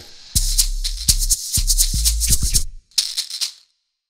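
Short outro jingle: a rhythm of shakers over a few low bass notes, closing with a last shaker flourish and then stopping about three and a half seconds in.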